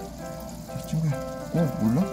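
Background music with sustained held notes, with short voice sounds about a second in and again near the end.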